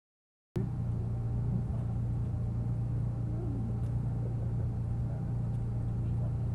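Open-top Jeep's engine running steadily as it drives, an even low rumble with a constant low drone. It starts suddenly about half a second in, after silence.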